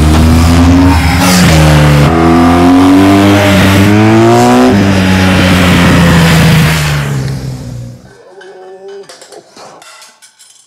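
BMW R 1200 GS boxer twin engine under hard acceleration, its pitch climbing and dropping twice at gear changes, then holding steady before fading out about eight seconds in. Faint clinks of metal and glass trophies being handled near the end.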